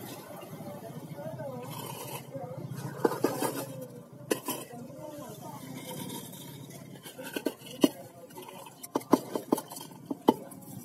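Dry cat kibble being scattered onto a wooden bench: a few short sharp clicks and ticks, bunched together near the end, over indistinct talking in the background.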